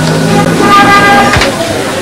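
Busy city street: car horns sounding in long held tones over traffic noise and voices.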